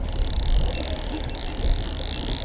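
Small boat's outboard motor running steadily at trolling speed, with wind and water noise around it.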